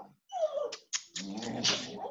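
Pet dog whining in short, high cries, one sliding downward, crying because its people have gone out without it. A few sharp clicks come about a second in.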